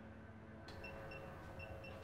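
Faint room tone with quiet, short high-pitched electronic beeps, a few a second, starting under a second in.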